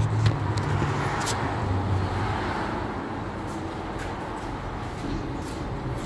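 Low hum of a running vehicle engine that fades away over the first couple of seconds, over steady workshop background noise with a few faint clicks.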